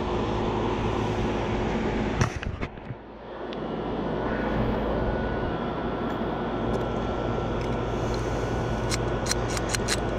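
Air-conditioning condenser running with its newly replaced fan motor: a steady fan rush over a low electrical hum. About two seconds in the sound dips briefly with a few clicks, and a run of sharp ticks comes near the end.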